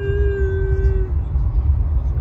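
Steady road rumble inside a moving car's cabin. Over it, for about the first second, a single held vocal tone at one level pitch, like a hummed "mmm", cuts off abruptly.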